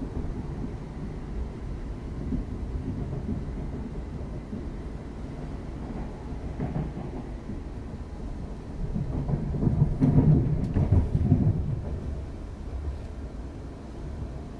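Cabin running noise of a Siemens Desiro class 350 electric multiple unit on the move: a steady low rumble of wheels and bogies that swells louder from about nine seconds in and eases off by about twelve.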